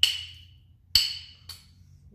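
A steel striker struck against a flint three times, the third strike softer, to throw sparks onto a cotton-ball tinder. Each strike is a sharp metallic click with a brief high ring.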